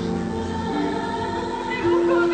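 Javanese gamelan music accompanying kethoprak theatre, with a long held sung line over steady sustained notes.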